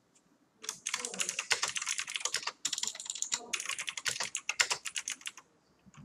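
Typing on a computer keyboard: a quick run of keystrokes with a short pause about halfway through.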